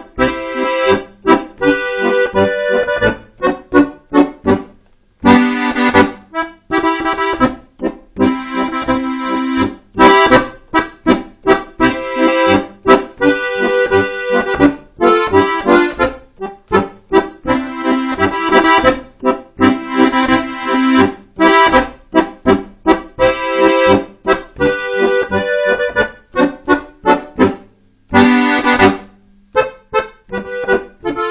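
Piano accordion playing a traditional dance tune: a melody on the treble keyboard over a steady, rhythmic accompaniment of short strokes on the bass buttons.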